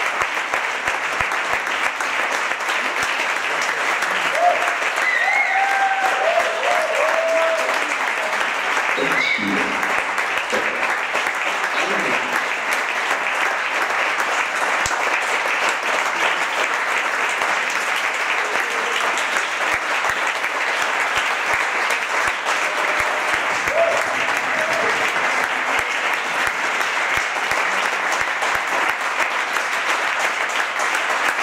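Theatre audience applauding steadily throughout, with a few voices calling out from the crowd in the first third and again briefly later.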